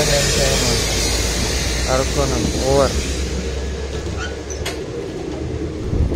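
Passenger train pulling out of a station, heard from its open doorway: a low steady rumble with a high hiss. A few words from voices come about two seconds in.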